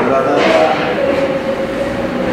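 A person's voice in a meeting room, holding one long, steady, drawn-out syllable, like a hesitation sound, between stretches of speech.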